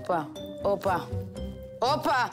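A woman chanting "hopa, hopa, hopa" in a rhythmic sing-song, about two syllables a second, over background music.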